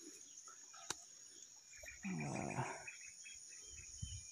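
Steady high-pitched drone of insects in a maize field. About two seconds in, a short low voice-like sound falls in pitch and lasts under a second. A single click comes about a second in.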